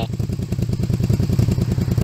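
Honda VTZ250's 250cc V-twin engine idling steadily, heard at the exhaust as a rapid, even train of exhaust pulses.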